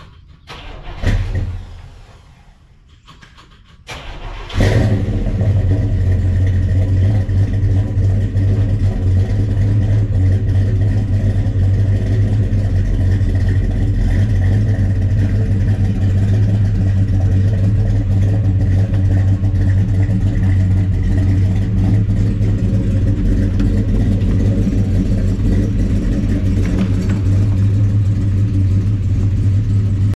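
1968 Chevelle SS big-block V8 starting: after a brief burst of noise about a second in, it cranks and fires about four and a half seconds in, then runs at a loud, steady idle.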